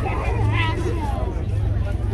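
Spectator chatter and nearby voices, not clearly worded, over a steady low hum.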